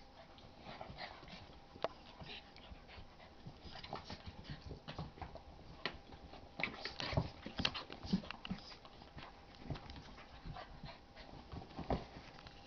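Two young dogs, an English x Olde English Bulldog puppy and a Basset Hound x Pug, play-fighting: irregular scuffling and mouthing noises with short dog vocal sounds, busiest around the middle.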